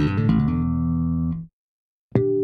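Intro jingle played on electric bass guitar: the end of a quick riff settling into one held note, which stops abruptly about a second and a half in.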